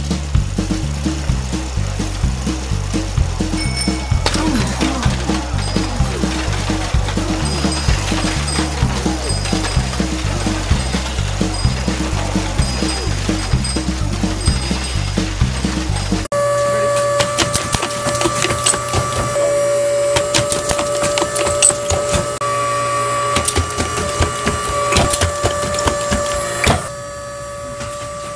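Music with a steady, repeating bass line that cuts off suddenly about sixteen seconds in. After it comes a different sound: a steady two-note hum with many rapid clicks and ticks.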